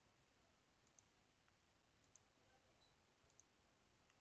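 Near silence with three faint computer mouse clicks about a second apart.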